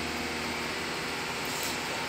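Steady background noise: an even hiss with a faint low hum underneath, unchanging throughout, with no distinct knocks or clicks.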